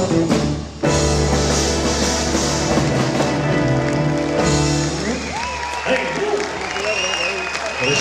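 Live rock-and-roll band with drums and electric guitar playing the close of a song, with a sharp stop and restart under a second in and a final chord about four and a half seconds in. Audience applause and cheering follow.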